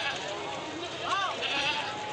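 A goat bleats once, about a second in, over the steady chatter of a crowd of men.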